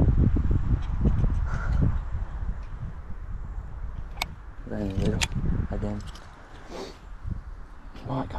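Low rumble of wind and handling on the microphone, fading after the first few seconds, while a baitcasting reel is wound in; a sharp tick comes about four seconds in and a brief murmured voice about five seconds in.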